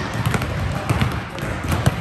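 Basketballs bouncing on a court: a few irregular, separate thuds over a steady background of voices.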